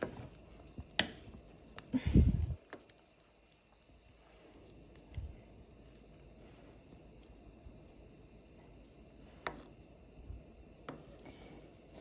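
Metal ladle stirring and prodding chicken pieces in a pot of simmering soup, with a few scattered clinks and knocks against the pot and one louder low thump about two seconds in, over a faint steady background.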